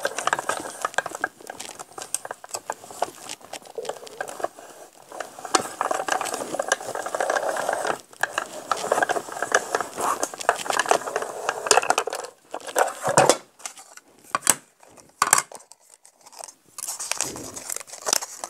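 Small Sizzix hand-cranked die-cutting machine being cranked, a continuous crackling, clicking grind as the cutting plates and metal die are pressed through its rollers to cut paper. About twelve seconds in the cranking stops, followed by scattered separate clicks and taps as the plates and die are handled.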